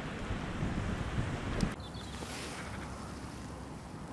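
Wind buffeting the microphone with a low rumble over choppy lake water, dropping abruptly about halfway through to a quieter, steady wind hiss.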